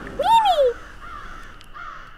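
A single short vocal call that rises and then falls in pitch, followed by a faint fading tail.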